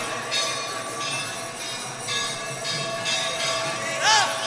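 Kirtan accompaniment carrying on between chanted lines: steady metallic ringing of bells and hand cymbals over a sustained drone and crowd noise, with no voice singing.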